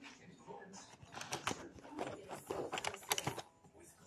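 Rummaging in a pencil case: plastic pens and markers clicking and rattling against each other in a quick run of small knocks, starting about a second in and stopping shortly before the end.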